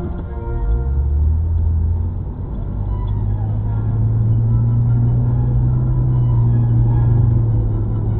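A car's low engine and road rumble heard from inside the cabin as it drives on. The rumble rises about a second in, then holds steady, under background music.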